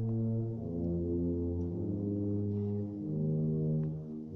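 Spanish wind band (banda de música) playing a Holy Week procession march: slow, sustained chords led by low brass, moving to a new chord every second or so.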